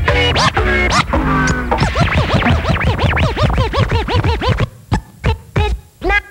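Vinyl records scratched by hand on turntables over a hip hop beat: a fast run of scratches rides over the beat, then near the end the beat drops out and short single scratches come with gaps between them.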